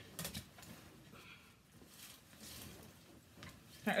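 Faint rustling and a few light clicks of a person moving about close to the phone's microphone, clothing brushing and handling noise.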